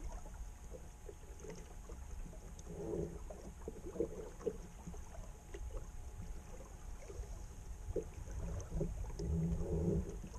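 Water slapping and gurgling against the hull of a small flat-iron sailing skiff running downwind through choppy waves, with a few louder splashes, over a low rumble of wind on the microphone.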